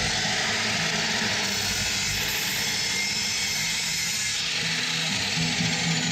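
Sliding compound miter saw running and cutting through a wooden board: a steady, high rushing whine of the spinning blade in the wood that holds for several seconds and cuts off suddenly near the end.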